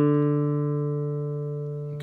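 A single bass note on a classical guitar's fourth string, plucked with the thumb, ringing on and slowly fading away.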